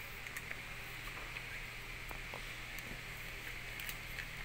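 Steady low hum and hiss of factory machinery, with a few faint ticks and rustles of plastic being handled.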